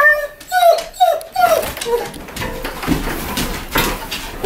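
A dog whining excitedly at the front door: a quick run of short, high, falling cries in the first two seconds, followed by scrabbling and a few knocks as the door opens.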